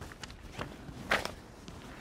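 A few faint, irregularly spaced clicks and light knocks during a pause in a lecture.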